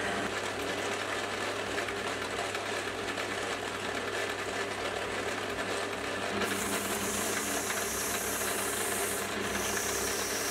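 Metal lathe turning a steel leadscrew bar with a carbide tool: a steady motor hum under the even rubbing noise of the cut. About six and a half seconds in, a strong high hiss joins, which is coolant mist spraying onto the cut. The hiss breaks off briefly near the end and then resumes.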